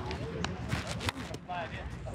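Indistinct talking in the background, with a few short knocks.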